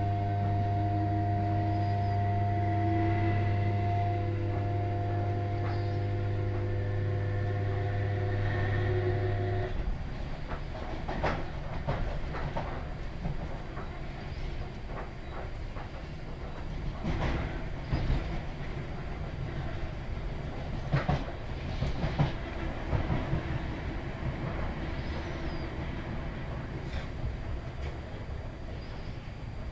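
Inside the carriage of a Class 317 electric multiple unit in motion: a steady electrical hum with several higher steady tones cuts off suddenly about ten seconds in. After that, wheel-on-rail rumble remains, with scattered sharp knocks from the track.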